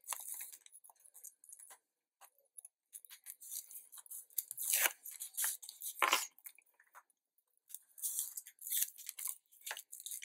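Backing strip being peeled off adhesive tape on a black card and the card handled: irregular crinkling and rustling of paper, louder about five and six seconds in and again near the end.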